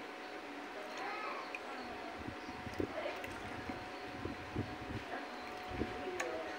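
Liquid trickling from a bottle into a small metal coffee pot sitting in water in a plastic bucket, with a few soft knocks from the pot and bottle.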